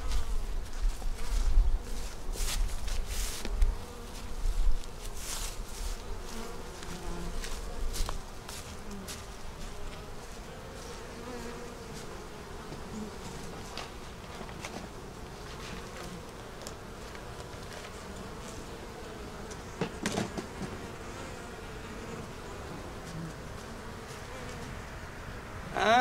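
Honey bees buzzing around an open hive, a steady hum that wavers slightly in pitch. Wind rumbles on the microphone through the first eight seconds or so, and a short louder noise comes about twenty seconds in.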